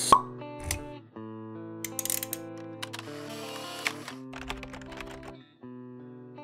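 Logo-intro music: several held tones with pops, clicks and brief hissing sweeps laid over them, thinning out near the end.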